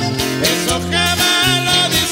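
Regional Mexican sierreño band playing live: an accordion carries the melody over a strummed acoustic guitar and an electric bass line, with no voice in this instrumental stretch.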